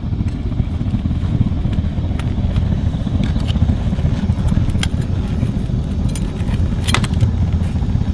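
A steady low rumble, with scattered metallic clicks and scrapes as steel tongs and a spoon work thick molten lava rock out of a steel crucible; the sharpest click comes about seven seconds in.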